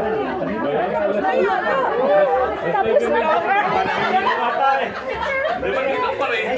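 Several people talking over one another at once: overlapping chatter of a small crowd, with no single voice standing out.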